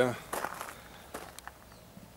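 A few short crunching footsteps on gravel in the first second and a half, then quiet.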